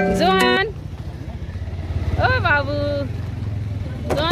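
A vehicle engine running steadily with a low rumble, coming in about half a second in, with short bursts of voices at the start and again about two seconds in.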